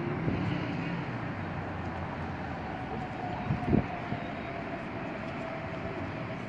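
Steady outdoor city rumble with a faint, steady engine drone from distant traffic or an aircraft, and a couple of short low thumps about three and a half seconds in.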